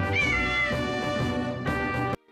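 A cartoon kitten gives one short, high meow, falling slightly in pitch, about a quarter of a second in, over steady background music.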